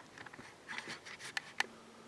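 A few faint, sharp clicks and taps as the blocks of a paper-covered flipping photo block are handled and turned in the hand.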